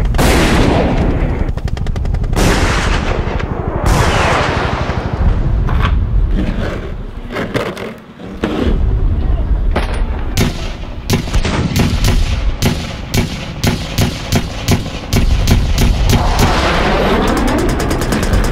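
Battle sound effects: explosions with long fading rumbles, then a run of rapid gunfire shots, a few a second, from about ten seconds in, and another explosion near the end.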